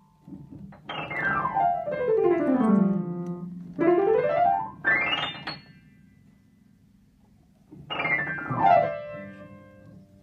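Acoustic piano played by children, with quick runs of notes swept down the keyboard from high to low, then shorter runs up it. After a pause of about two seconds with a low note still sounding, another downward sweep comes near the end.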